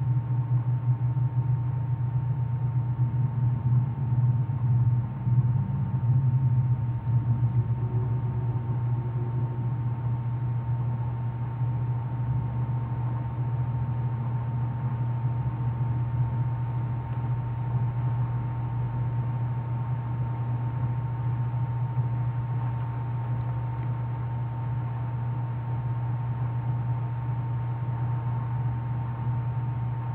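A steady low hum with a faint constant higher tone over a soft hiss, with no speech.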